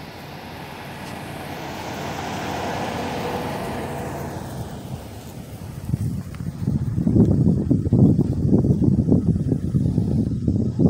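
A car passing by, its noise swelling to a peak about three seconds in and then fading away. From about six seconds on, wind buffets the microphone with loud, irregular low rumbles.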